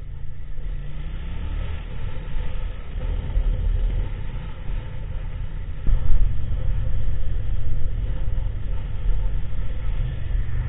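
Motorcycle engine running while riding in traffic, mostly a low rumble with road and wind noise, its pitch rising briefly about two seconds in as it accelerates. About six seconds in the sound changes abruptly and gets louder.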